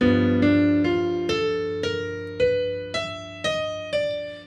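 Piano playing a slow bebop line over a G7 chord: a left-hand chord struck at the start and held, with single right-hand notes about two a second, mostly climbing.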